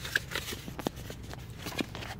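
Handling noise from hands at work close to the microphone: a scattered series of light clicks and rustles.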